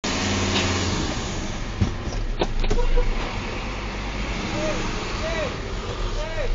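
Fire tanker's engine running, heard from inside the cab as a steady low rumble, with a few sharp clicks a little over two seconds in.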